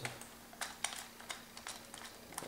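A small screw being turned out of the plastic hard-drive bay cover on the underside of a ThinkPad T61 laptop, by screwdriver and fingers: a string of faint, irregular small clicks and ticks.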